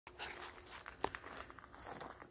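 Faint outdoor ambience: a steady high-pitched insect trill with a few soft knocks, the sharpest about a second in.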